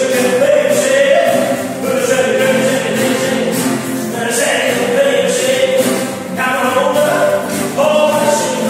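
Live acoustic music: two acoustic guitars, one a nylon-string classical guitar, strummed and picked while voices sing along in long held notes that step from one pitch to the next.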